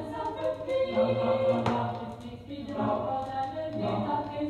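An amateur choir singing in Swedish harmony, playing from a 1970 vinyl LP, with held chords that shift from note to note.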